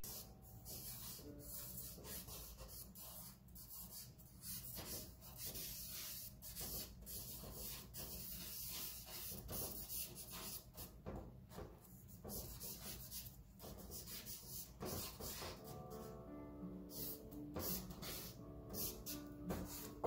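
Stick of charcoal scratching and rubbing across drawing paper in quick, irregular strokes. Faint music comes in about three-quarters of the way through.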